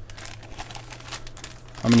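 A plastic tobacco bag crinkling in a series of irregular crackles as it is picked up and handled, over a low steady hum.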